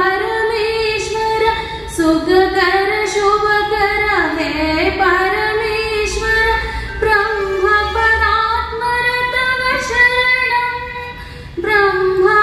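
A woman singing a devotional prayer song solo, one voice holding long notes with gliding, ornamented turns of pitch. A short breath pause comes near the end.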